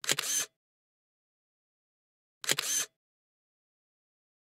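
Camera-shutter click sound effect, heard twice about two and a half seconds apart, each a short sharp double snap with dead silence between.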